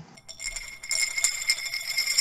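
Bright jingling, tinkling bell-like shimmer with a shaker-like rattle, fading in during the first second and then holding steady. It is a music or sound-effect cue, not a pump.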